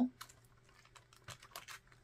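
Faint, scattered small clicks and taps from fingers working the stiff metal rings of a ring binder and handling its plastic envelopes, the rings not yet opening.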